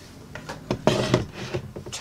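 Fabric strap being folded and smoothed by hand on a table, giving a few short rustling and brushing sounds about half a second in, through the middle and near the end.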